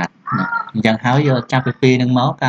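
A man speaking Khmer in steady narration, reading and explaining a text.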